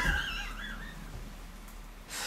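A man's high-pitched, wheezy laugh that wavers up and down and fades out within about the first second, leaving a faint low hum.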